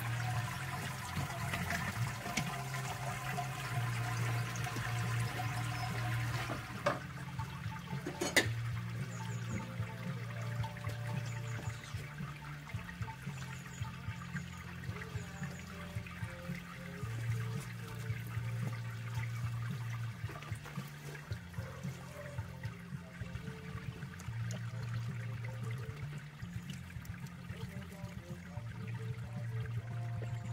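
Wort trickling and pouring out of a raised all-grain brewing basket back into the kettle below, heavier for the first six seconds and then a thinner drain. Two sharp metal knocks come about seven and eight seconds in.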